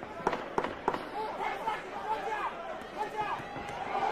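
Three sharp smacks of boxing gloves landing punches in quick succession, about a third of a second apart, in the first second.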